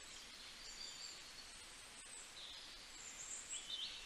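Faint high chirping over a low steady hiss.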